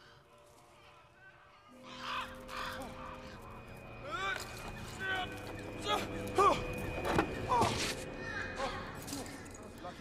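Film soundtrack: a score of held notes swells in from about two seconds in, with short bird calls over it that grow louder around the middle.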